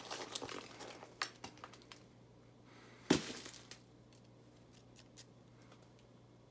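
Chert flakes clinking and scraping against each other as they are handled and brushed across a leather lap pad, a quick run of small glassy clicks, then one heavier, sharp knock of stone about three seconds in and a few faint clicks near the end.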